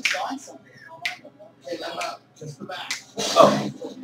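Men's voices talking and laughing, mostly unclear, with one louder outburst a little past three seconds in.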